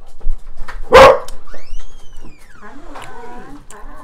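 A dog barks once, loudly, about a second in, then gives a high whine that rises and falls, followed by fainter background voices.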